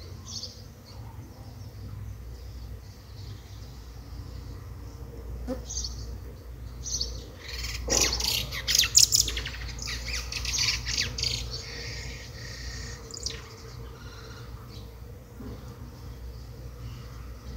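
Birds calling in the background, busiest and loudest around the middle, over a steady low hum.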